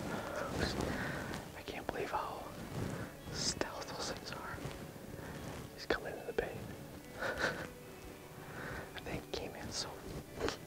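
A man whispering in short, hushed phrases.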